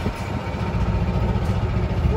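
Golf cart driving along a road: a steady low rumble from its motor and wheels.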